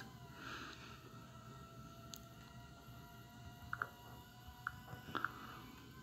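Quiet room tone with a faint steady hum made of several thin tones, broken by a few small, sharp clicks about four and five seconds in.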